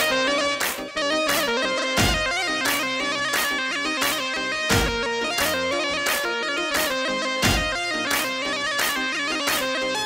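Amplified live wedding music for a halay line dance: an instrumental passage with a plucked-string lead melody over a steady drum beat.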